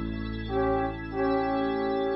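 Background instrumental music: held chords with a slow melody moving from note to note, without singing.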